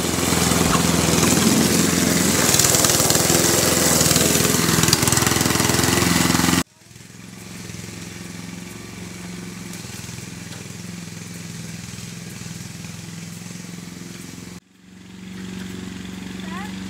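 Garden hose spray nozzle jetting water against the inside of a plastic IBC tote, a loud steady hiss with the patter of water on plastic, cutting off abruptly after about six and a half seconds. What follows is a quieter, steady small-engine hum, like a lawn mower running some way off.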